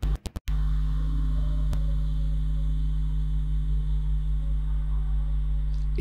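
Steady low electrical hum, a mains buzz with evenly spaced overtones, after a few short chopped-off bursts in the first half second.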